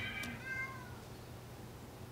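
A house cat meowing: a short, faint call that falls slightly in pitch and fades out within the first second.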